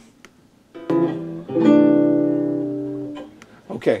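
Acoustic guitar recording played back from the editing timeline through computer speakers: one plucked chord under a second in, then a final chord that rings out and fades over about a second and a half. The camera's track and the external microphone's track play together as a sync check, where a slight offset would show as an echo.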